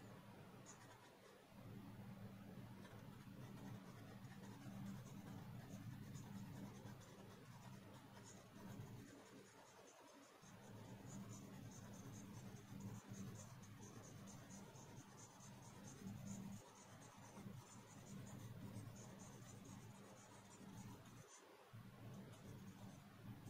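Faint scratching of a pencil shading on paper in long, steady strokes, broken by a few brief pauses.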